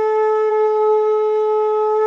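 Conch shell (shankh) blown in one long, steady note.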